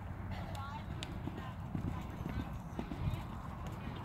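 Hoofbeats of a horse cantering on loose arena dirt, a rhythm of low thuds.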